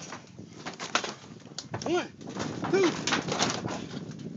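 Thumps and rattles of bodies bouncing and landing on a backyard trampoline's mat and spring frame. About two and three seconds in come two short squeaky tones that rise and then fall.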